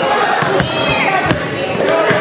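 Basketball being dribbled on a hardwood gym floor, a few sharp bounces with the sharpest just past the middle, under the shouting voices of players and spectators.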